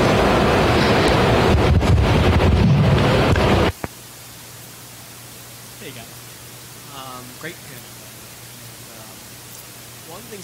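Loud, rough hiss-like noise over the sound system that cuts off suddenly a little under four seconds in. After it come faint, distant voices over a low steady hum.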